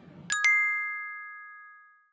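Bright chime sound effect marking a cut to a text card: two quick strikes about a third of a second in, then a ringing tone of a few pitches that fades away over about a second and a half.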